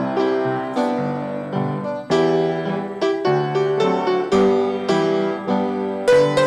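A keyboard plays a hymn tune in steady chords with the melody on top, each new chord struck every half-second or so. No voices are singing.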